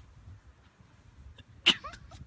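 A single short, sharp sneeze-like burst near the end, over a low rumbling background.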